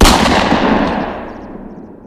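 A single loud cinematic impact hit, like a boom, struck just as the music cuts off, with a long tail that fades away over about two seconds.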